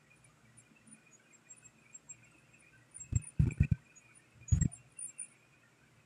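Mostly quiet, with three quick soft knocks just past halfway and another about a second later. This is handling noise from fingers tapping on the phone that is recording.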